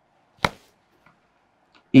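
A single sharp tap about half a second in, with two faint ticks after it; a spoken word begins right at the end.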